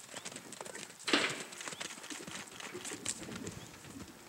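Hoofbeats of several horses galloping over dry, dusty ground, an irregular patter of knocks, with one short louder rush of noise about a second in.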